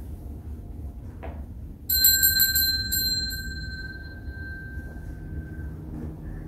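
Hand-held altar bell shaken by the altar server in a quick run of several strikes about two seconds in, its ringing then fading away over the next few seconds: the bell rung at the consecration during the silent Canon of the Latin Mass.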